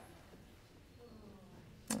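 Near silence: quiet room tone in a pause between speakers, with a short, sharp sound just before the end as speech resumes.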